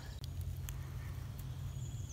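Low rumble and a few faint light clicks of a handheld camera being moved in close, with no other clear sound.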